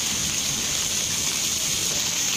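Steady rain falling at night from Cyclone Sitrang, a continuous even hiss.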